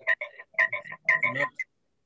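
A man's voice over a video-call connection breaking up into a croaky, stuttering, robotic sound, rapid choppy pulses with the low end gone, then cutting out to dead silence near the end: a glitch of the call's audio transmission.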